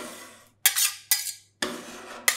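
Metal spatulas chopping and scraping a yellow ice-cream mixture on a frozen steel rolled-ice-cream plate. About four sharp strokes, each trailing into a short scrape of metal on metal.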